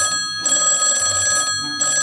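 A telephone ringing with an incoming call, its bell coming in repeated bursts.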